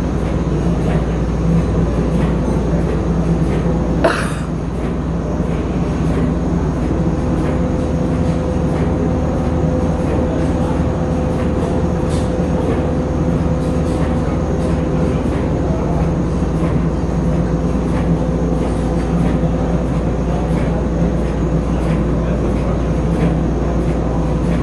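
Heinrich Lanz steam engine running with its flywheel turning, a steady mechanical rumble and hum. A short, sharp sound stands out about four seconds in.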